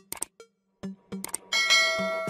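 Subscribe-button animation sound effects over background music with a steady beat: quick mouse clicks, then about one and a half seconds in a bright bell chime rings out and keeps ringing.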